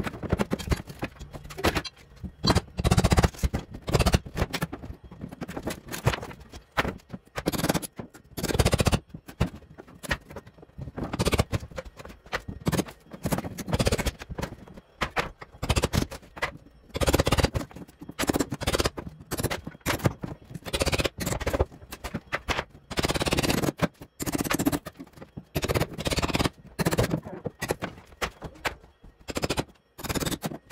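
Hand demolition with a hammer and pry bar on wood framing and boards: irregular clusters of sharp knocks and blows, with scraping as pieces are worked loose.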